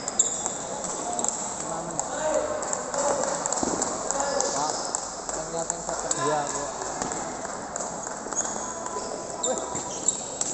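Indistinct chatter of many voices echoing in a sports hall, with a few light ticks of a table tennis ball near the end.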